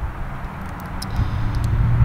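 Low, steady outdoor background rumble, swelling slightly in the second half, with a few faint high ticks.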